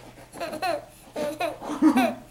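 Baby laughing in about three short bursts.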